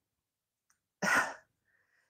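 A short, sharp puff of breath from a woman, about a second in, in a pause between sentences.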